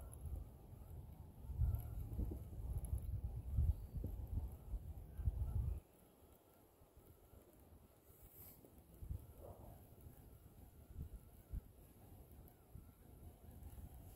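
Wind buffeting the phone microphone in gusts as a low rumble. It drops away abruptly about six seconds in, leaving a faint outdoor background.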